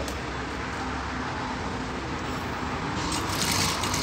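Sewing machine running steadily, stitching a double piping strip along a dress neckline; the sound grows a little louder near the end.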